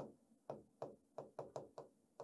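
Pen writing on a sheet of paper on a hard desk: about six short, faint taps at irregular intervals as the strokes land.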